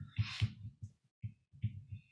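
A man drawing a short breath through the mouth, followed by faint, irregular low thuds.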